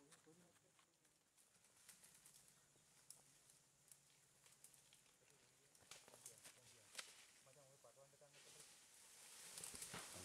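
Near silence: faint outdoor ambience with a few soft clicks and faint, distant voices.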